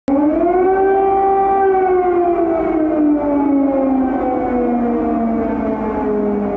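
Air-raid siren wailing: one long tone that starts suddenly, rises briefly, then slowly falls in pitch.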